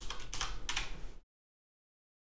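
Computer keyboard keystrokes as a password is finished and entered: a short run of a few sharp clicks lasting about a second.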